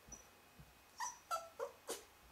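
A Lhasa Apso giving four short, high-pitched yips in quick succession, about a third of a second apart, in the second half.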